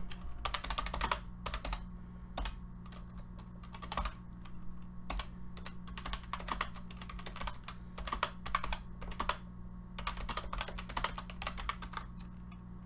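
Typing on a computer keyboard: several bursts of quick key clicks with short pauses between them, over a steady low hum.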